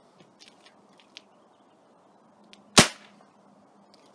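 A Daisy Powerline 880 multi-pump air rifle, pumped ten times, fires once about three seconds in: a single sharp crack. A few faint clicks come before it.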